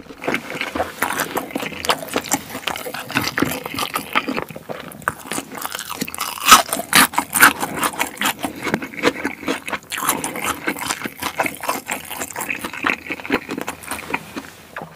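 Close-miked chewing and mouth sounds of a person eating: a dense, irregular run of small wet clicks and smacks, loudest around the middle.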